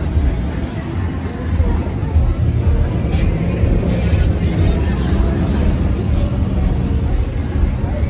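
Busy street traffic: a steady low rumble of vehicle engines running, with people's voices mixed in.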